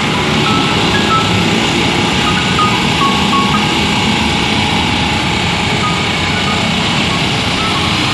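Water tanker truck's engine running steadily close by, with the hiss of water from its hose spraying onto the plants and ground. A few short high-pitched beeps come in the first few seconds.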